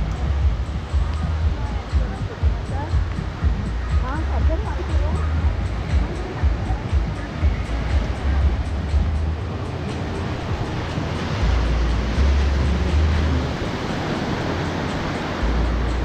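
Small waves breaking and washing up a sandy beach; the surf's hiss swells louder in the second half. A low buffeting rumble of wind on the microphone runs underneath.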